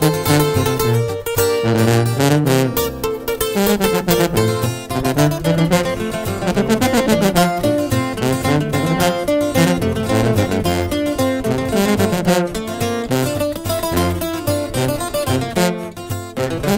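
Instrumental break of a Mexican corrido: acoustic guitars playing a fast, plucked lead line over a moving bass line, with no singing.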